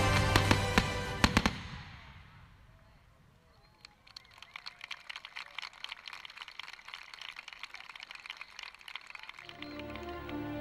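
Fireworks display: loud firework bangs over music in the first second or so as the music fades out, then after a brief hush a dense, irregular crackling of many small pops for several seconds. Music returns near the end.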